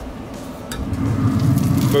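The lid of a Burnhard grill opening: a click about two-thirds of a second in, then the noise from the opened cooking chamber swells and holds steady from about a second in.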